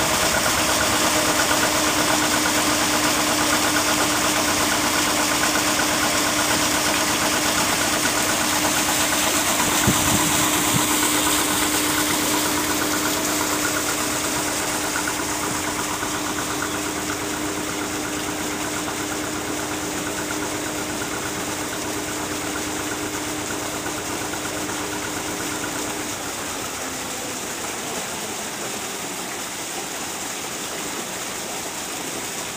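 A working narrowboat's engine running steadily as the boat pulls away from the lock, over the rush of churned and flowing canal water. The engine fades through the second half and drops out about four seconds before the end, leaving the water sound. There is a single thump about ten seconds in.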